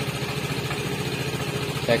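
Vespa Primavera scooter's single-cylinder four-stroke engine idling steadily just after starting, with an even, rapid low pulse.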